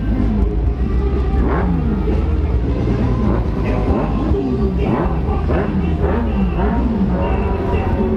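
Motorcycle engines at low speed in a crowd of bikes: a steady low engine rumble, with engines revved up and down again and again. Music and voices sound faintly behind.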